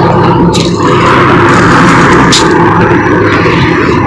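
Loud, steady rush of passing road traffic on a highway.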